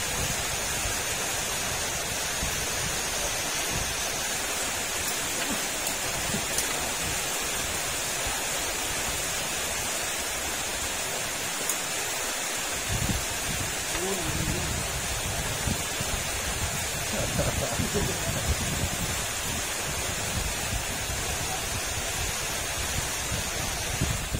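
Steady rain falling on water, an even continuous hiss with no change in level.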